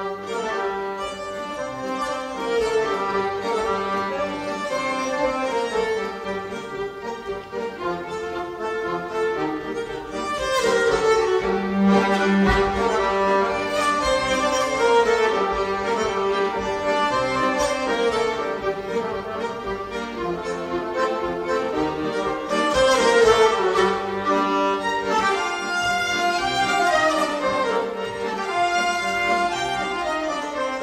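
A fiddle, a nyckelharpa and an accordion playing a folk tune together, starting at once at the very beginning, over a steady low held note.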